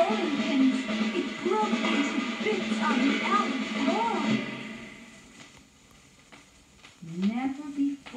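Children's story record playing: a voice over music, fading out about four and a half seconds in, then a near-quiet stretch with a few faint clicks before a voice starts again near the end.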